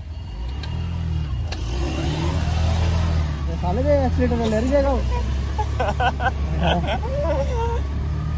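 Motor scooter engine running steadily and picking up as the scooter moves off along a wet, waterlogged paved lane, with the hiss of its tyres on the wet surface. A voice is heard over it in the middle and near the end.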